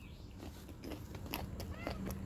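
Chewing a mouthful of raw okra pod close to the microphone: soft, irregular crunching and mouth sounds.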